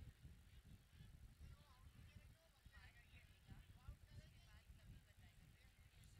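Near silence: faint open-air ambience with distant, indistinct voices from the field.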